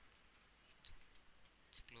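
Near silence with a few faint computer-mouse clicks, about one a second, as a date is picked from a calendar in a web form.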